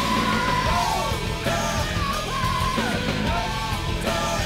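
Hard rock band recording playing loudly, with a high, shouted male vocal line sliding between notes over a dense band backing.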